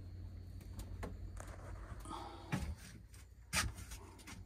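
Quiet steady low hum, with a couple of sharp clicks or knocks in the second half, the second the loudest.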